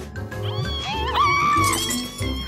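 Cartoon background music with a steady low beat, over which a small cartoon creature gives a high, wavering, squeaky cry from shortly after the start until near the end.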